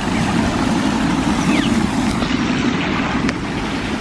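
Water running and splashing steadily over the rocks of an outdoor fountain.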